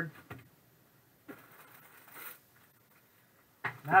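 Faint crinkling rustle of a clear plastic bag being handled, starting about a second and a half in and lasting about a second, then a man's voice near the end.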